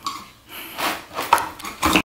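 A few light clicks and scrapes of a small hand tool, a screwdriver worked against something hard on the floor.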